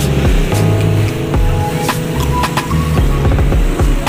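Background music with a strong bass beat and percussion.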